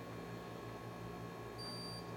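A blood glucose meter gives a single high-pitched electronic beep near the end, over a low steady hum. The beep marks the test reading being ready.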